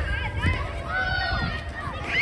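Children's shouts and high-pitched calls as they play a ball game on a grass field, over a steady low rumble.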